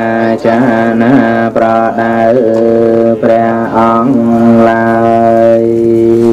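A Buddhist monk chanting in a low male voice, with long held, gliding tones broken by short breaths about once a second.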